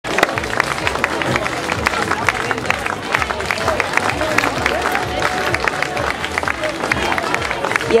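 Spectators clapping, many separate claps throughout, over crowd chatter.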